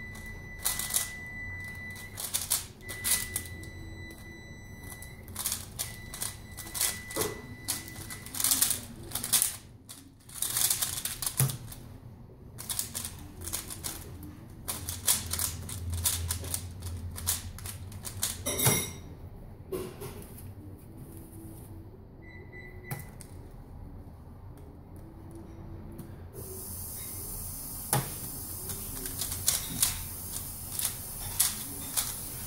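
Rapid clicking and clacking of a Valk Power 3x3 speedcube being turned fast during a timed solve, dense for about the first thirteen seconds. After that the turning is sparser, with a single louder click a little before the twenty-second mark, and a steady hiss comes in near the end.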